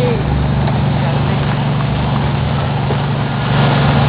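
Golf cart running with a steady low hum as it tows a train of handmade trailer cars, with the rolling noise of wheels on a gravel drive.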